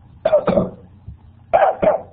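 A man coughing twice, about a second apart, each time a pair of quick hacks. He has said his throat is inflamed.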